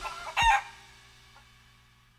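A chicken giving one short, loud squawk about half a second in.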